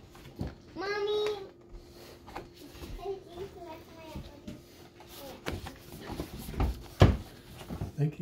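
Hard plastic drone hull and its packaging being handled, with scattered clicks and knocks and one loud knock about seven seconds in. A child's voice is heard briefly about a second in.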